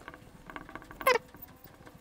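Dry-erase marker drawing on a whiteboard: faint scratching, then one short squeak about a second in that falls steeply in pitch.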